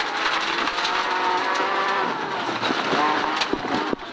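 Rally car engine running hard at high revs under acceleration, heard from inside the cabin. The note breaks off briefly about two and a half seconds in and then pulls again, as at a gear change, with a few sharp clicks near the end.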